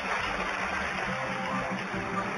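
Closing theme music of a television programme playing over the end credits, its pitched lines building steadily.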